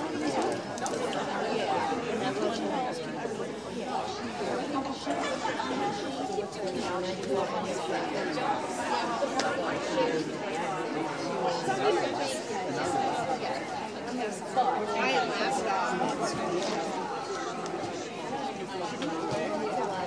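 Indistinct background chatter: several people talking at once, with no single clear voice.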